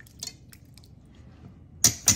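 Wire whisk stirring meat in a thin marinade in a stainless steel bowl: faint wet stirring with a few light clinks, then a sharp clink of the whisk against the bowl near the end.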